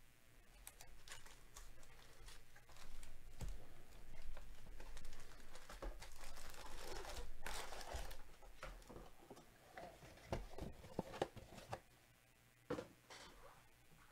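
Foil wrappers of trading-card packs crinkling and rustling as they are handled, with a few soft knocks of the cardboard box and packs on the table.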